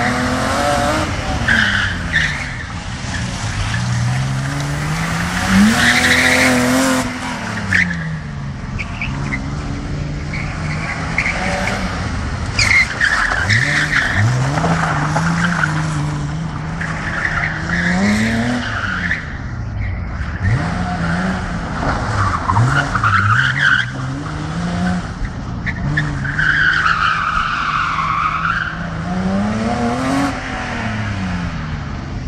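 BMW E30 being drifted: its engine revs climb and fall again and again as the car slides, with the tyres squealing in repeated bursts. The longest squeal comes near the end.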